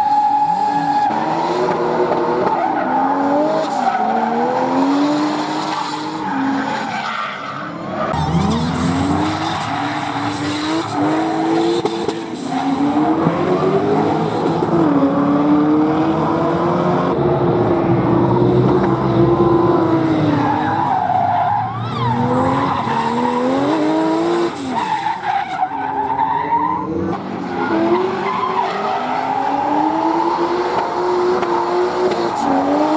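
BMW E36 drift car with a turbocharged Toyota 1JZ straight-six engine, revving up and down again and again while it drifts, its rear tyres squealing and skidding.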